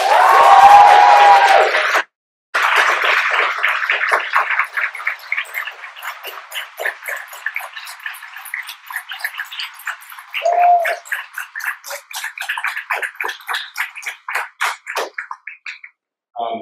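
Audience applause in a hall. It opens with a loud burst of cheering and clapping, then runs on as a long round of clapping that thins to scattered claps near the end.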